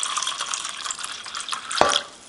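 Water poured from a glass pitcher into a small plastic cup, splashing as the cup fills, with a single knock near the end.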